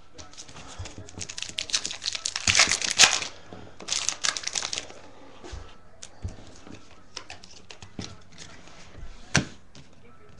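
Baseball card pack's foil wrapper torn open and crinkled for a few seconds, loudest in two spells in the middle. Then the cards are handled, with scattered light clicks and taps as they are slid and set down.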